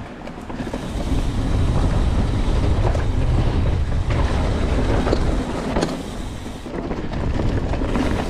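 Wind buffeting an action camera's microphone on a fast mountain-bike descent, with the tyres rumbling over a dirt trail, growing louder about a second in as speed picks up. A few sharp knocks and rattles from bumps in the trail break through.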